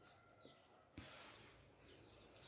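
Near silence: room tone, with one faint tick about a second in.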